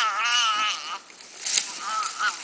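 Young bushbuck calf bleating in distress, a long wavering, quavering cry that breaks off about a second in, followed by a brief crackle and a fainter cry starting near the end. The calf is crying as chacma baboons catch and eat it.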